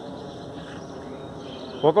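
Steady outdoor background noise, then a person's voice calling out loudly near the end.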